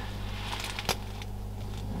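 Steady low hum with a couple of brief clicks, the sharper one just under a second in.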